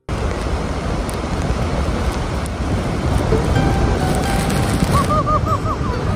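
Roar of a large waterfall heard up close, a loud steady rush of falling water that cuts in suddenly at the start, with wind buffeting the microphone. A faint high warbling call sounds near the end.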